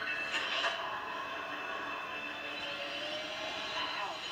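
Television episode soundtrack with no dialogue: a low, steady background score or drone with faint held tones.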